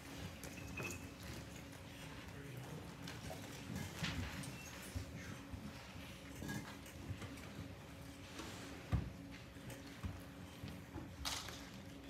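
Quiet pause in a concert hall before the music starts: a faint steady hum with scattered small knocks and rustles, the sharpest knock about nine seconds in.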